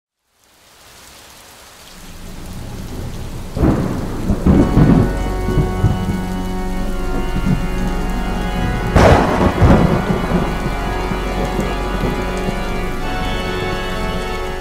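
Thunderstorm sound effect in a channel logo intro: steady rain fading in, with two loud rolls of thunder, about three and a half seconds in and again about nine seconds in, over faint steady tones.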